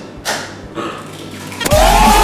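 A couple of short cracks as an egg is broken one-handed over a steel mixer bowl, then about a second and a half in a sudden, loud yelling cheer bursts in and carries on.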